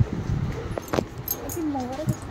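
Supermarket aisle background noise, with a single sharp click about a second in and a faint voice near the end.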